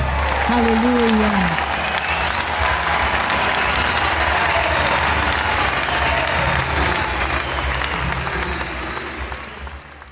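Large congregation applauding, a dense clapping that dies away near the end. A woman's amplified voice trails off over the first second or so.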